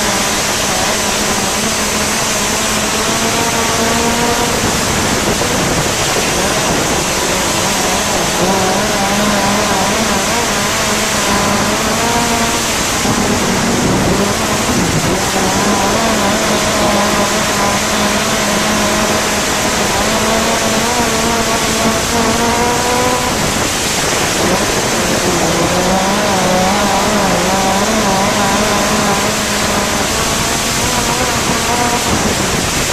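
Gaerte 166-cubic-inch inline midget racing engine at race speed, its pitch rising and falling through the laps, with dips about halfway through and again near the end. Heavy wind rush on the open cockpit's microphone.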